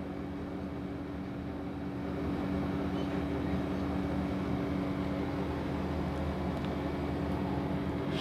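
A steady low hum of constant pitch, a little louder from about two seconds in.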